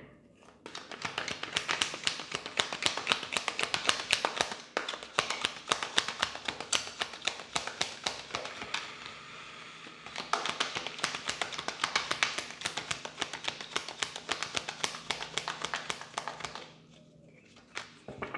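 A tarot deck being shuffled by hand: a fast run of light card clicks that turns softer for a moment about halfway through, then picks up again and stops about a second before the end.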